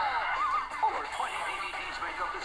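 Soundtrack of a Nickelodeon cartoon DVD commercial: music under a high, wavering cartoon voice or whinny-like sound effect.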